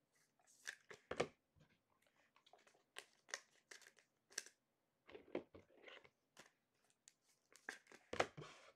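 Faint, scattered crinkles and clicks of trading-card packs and cards being handled, with a louder click about a second in.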